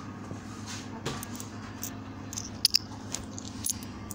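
Metal coins clinking together in a hand, with a couple of sharp metallic clinks about two and a half seconds in, over a steady low hum.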